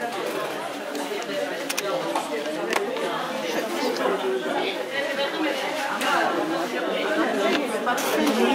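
Many people talking at once in a crowded room: a steady hubbub of overlapping conversation with no single voice standing out.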